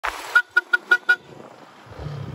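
A brief burst of noise, then a vehicle horn sounding five quick, short beeps of the same pitch in a row.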